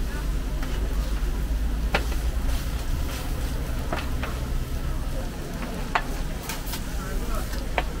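Metal scrapers clicking and scraping against a steel griddle as shredded-potato pancakes are cut and turned, sharp clicks about once a second. Underneath are a steady low rumble and the sizzle of the hot griddle.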